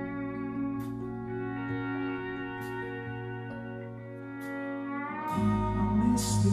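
Live band playing, led by a steel guitar played with a slide in long held, gliding notes over bass and drums. Near the end the steel slides up in pitch and the band swells louder.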